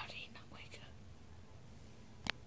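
A person whispering a few quick syllables in the first second, then quiet.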